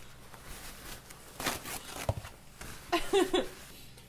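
Paper towel rustling and rubbing in short bursts as whipped cream is wiped off, with a brief voice about three seconds in.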